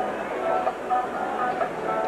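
Stadium crowd noise: a steady murmur of many voices at once.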